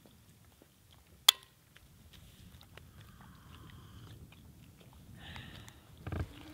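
A single sharp click from a vacuum flask's cap about a second in, followed by faint, soft crunching.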